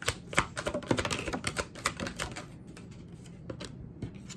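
A deck of tarot cards being shuffled by hand: a quick run of card snaps and flicks for about two seconds, then only a few scattered clicks.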